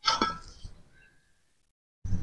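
Fired clay brick tile being handled and set into place: a short, sudden scrape and knock that fades within about half a second.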